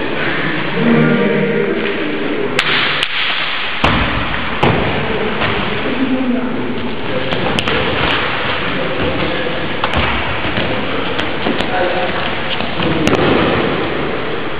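Wrestlers' bodies thumping onto padded gym mats during a grappling bout, with about ten sharp impacts scattered through, over a steady noisy background with voices calling out.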